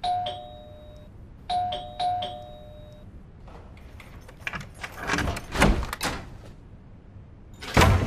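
Two-note electronic doorbell chime, rung three times in the first three seconds, the last two rings close together. Then clicks and rattling of a key worked in the door lock, and a thump as the door opens near the end.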